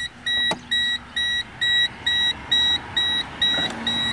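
Geo Metro's dashboard warning chime beeping steadily with the key in the ignition, the car's electronics running off a temporary boat battery. The beeps are high and evenly spaced, a little over two a second. There is a single click about half a second in.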